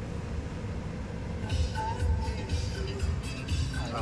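Car stereo playing music through the cabin speakers from its touchscreen head unit tuned to an FM station, coming up about one and a half seconds in while the audio system is being tested.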